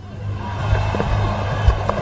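Cricket bat striking the ball once on a sweep shot, a short knock about three-quarters of the way through, over a steady low hum of broadcast ambience.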